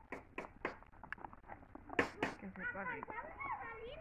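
Chunks of vegetable dropped by hand into a pot of simmering broth, a string of sharp plops and knocks, the two loudest about halfway through, followed by quiet talking.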